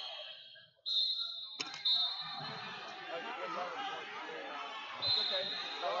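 Wrestling hall hubbub: background chatter with several short, shrill whistle blasts from referees, and a single sharp thud about a second and a half in.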